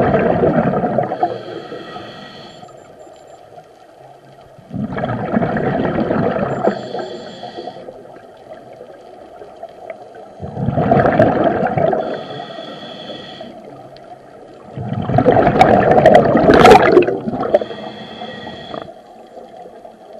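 A scuba diver breathing underwater through a regulator, heard close up. Every five seconds or so a loud, two-second rush of exhaled bubbles gurgles out of the regulator, and each is followed by a quieter, whistling hiss as the diver inhales through the demand valve.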